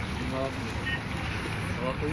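Wind rumbling steadily on a phone microphone over the wash of a calm sea against shoreline rocks, with faint distant voices.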